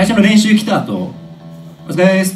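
Electric guitar strummed through an amp between songs, the chord ringing and fading over about a second, then struck again near the end.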